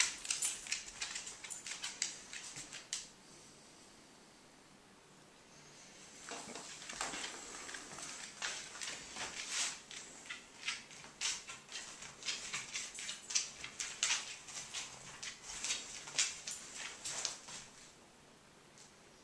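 Dogs' claws clicking and scratching on a hardwood floor as a puppy and a larger dog move about: a short spell of clicks, a pause of about three seconds, then a longer, busier run of irregular clicks and scrabbling.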